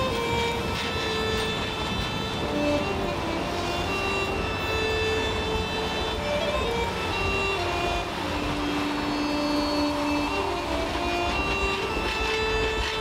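Passenger cars of a steam excursion train rolling past on the rails with a steady low rumble, under background music that carries a slow melody of held notes.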